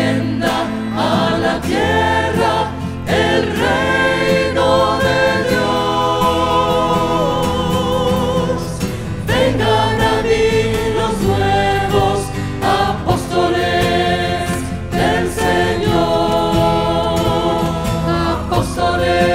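Mixed group of men's and women's voices singing a slow Spanish devotional hymn together, with long held notes with vibrato over steady low instrumental accompaniment.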